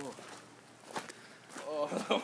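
A few footsteps in a quiet stretch between bits of talk, with a faint knock about a second in.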